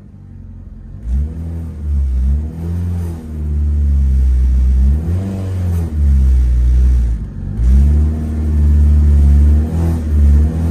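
Toyota Celica ST185's turbocharged 3S-GTE four-cylinder engine, heard from inside the cabin, revved repeatedly with the car standing still; the revs rise and fall several times after starting about a second in.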